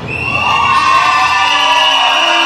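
Audience cheering and screaming, many high voices in long held shouts, swelling over the first second to a loud, steady roar as the music cuts out.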